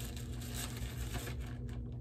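Faint rustling and crinkling of a small lightweight fabric stuff sack being pulled open at its drawstring and cord lock, dying away near the end.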